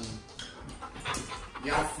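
A dog panting close by, a run of short, quick breaths.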